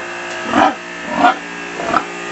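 Water hissing from a hose spray nozzle onto a sow's back, with a steady hum under the spray. The sow gives three short grunts, about two-thirds of a second apart.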